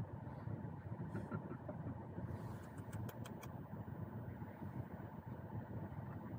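Car engine idling, heard from the footwell inside the cabin as a steady low hum, with a few faint clicks in the middle.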